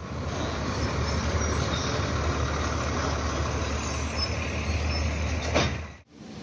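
A heavy road vehicle running close by, a loud steady low rumble. A brief sharp noise comes near the end.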